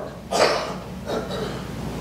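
A man's short, breathy intake of breath about a third of a second in, and a fainter breath sound just past a second, over a low steady room hum.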